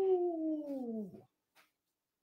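A man's drawn-out wordless vocal, a high 'ooh' that slides steadily down in pitch and stops about a second in.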